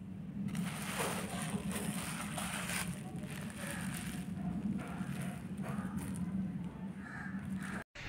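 A plastic bag rustling as it is pulled away from raw fish in a steel bowl, in irregular rustles over a low steady hum, cut off abruptly just before the end.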